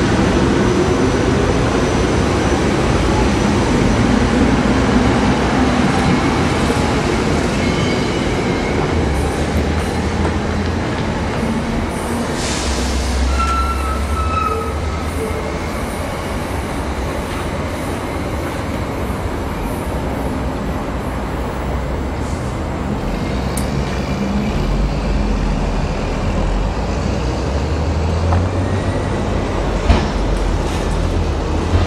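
Electric multiple-unit commuter train running past on electrified main-line track: a steady rumble of wheels on rail, dipping slightly in the middle and rising again near the end.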